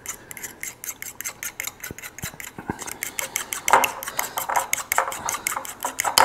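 A metal spoon stirring and scraping around a bowl, mixing mayonnaise into melted butter to make a smooth sauce base: a quick, even run of light clinks, about five or six a second, growing louder a little past halfway.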